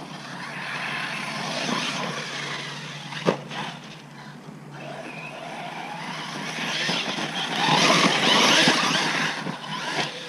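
Arrma Talion 6S RC car driving over rough dirt: its brushless motor and tyres rise to two loud passes, the second longer and louder, with a sharp knock about three seconds in.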